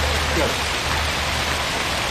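Outdoor fountain's water jets splashing steadily into their pool, an even rushing hiss, with a low steady hum underneath that fades near the end.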